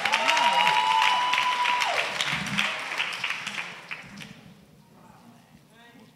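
Congregation applauding, with a single high note held over the clapping for about the first two seconds; the applause dies away about four seconds in.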